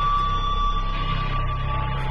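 Background score music: a sustained low drone under a steady high note that fades out about a second in.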